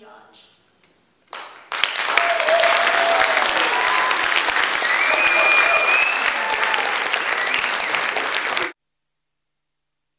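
Audience applauding, with a few voices calling out over the clapping. It starts about a second and a half in and cuts off suddenly near the end.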